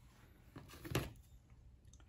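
Faint handling sounds at a wooden workbench, with one brief louder rustle and knock about a second in as a pair of scissors is picked up off the bench.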